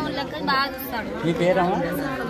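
A woman speaking, with the chatter of other people behind her.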